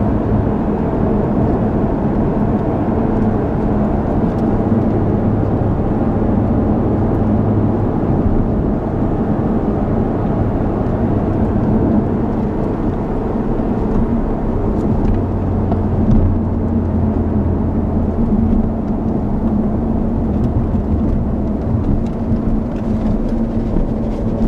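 A 2014 Jaguar XKR's supercharged 5.0-litre V8, with tyre and road noise, heard inside the cabin while the car cruises at a steady engine speed.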